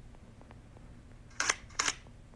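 Two short, sharp noises about a third of a second apart, roughly one and a half seconds in, over a faint steady background.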